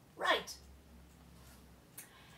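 A short, high vocal squeal that slides quickly down in pitch, about a quarter second in, followed by a small click and another brief click near the end.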